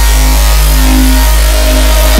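Dubstep music: a loud, long-held heavy bass note with a few steady higher tones and a bright hiss-like layer on top, and no drum hits.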